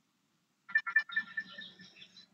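A short electronic jingle, like a notification or ringtone: three quick notes followed by a brief held tone, lasting about a second and a half and starting about two-thirds of a second in.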